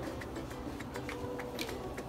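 Faint, scattered light clicks and taps as a plastic-rimmed mesh strainer is handled over the counter.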